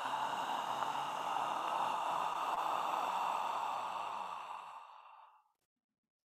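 A long, audible human exhale releasing a held breath, one steady rush of breath lasting about five seconds that fades away near the end.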